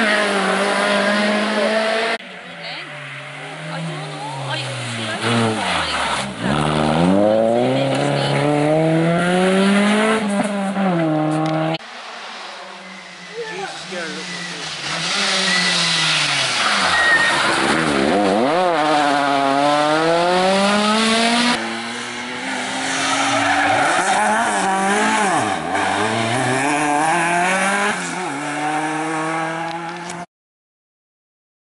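Rally car engines revving hard through a bend, the note climbing and falling steeply again and again as the drivers change gear and come off and back onto the throttle. Four short passes by different cars follow each other, with abrupt cuts about 2, 12 and 22 seconds in.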